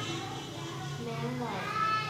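Speech only: a child's voice, high in pitch, speaking in short bits.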